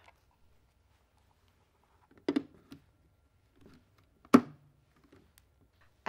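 Plastic-on-plastic knocks as a battery pack is set into the battery compartment of a Natus Camino 2 ICP monitor. There is a soft knock about two seconds in, a few faint ticks, and then a single sharp clunk, the loudest sound, a little after four seconds.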